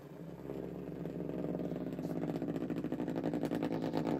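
Duncan Wizzzer spinning top running on a hard tabletop: a steady drone with a rapid buzzing rattle that grows louder.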